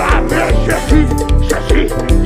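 Live band playing upbeat praise music with a steady beat, a male lead singer singing into a handheld microphone over it.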